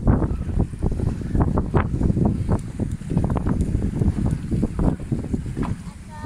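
Gusty wind buffeting the microphone on a boat in choppy water, with the splash of waves against the hull.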